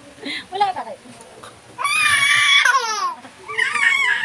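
A baby squealing and laughing in high-pitched bursts. A long squeal in the middle falls in pitch at its end, with shorter ones near the start and end.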